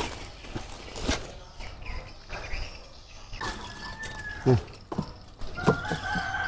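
Hen calling several times in the second half: one held, slightly arched call, then a few shorter ones. There are a couple of sharp knocks about a second apart earlier on.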